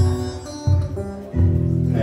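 Live guitar music in a gap between sung lines: held guitar notes over a low thump that comes about every three-quarters of a second.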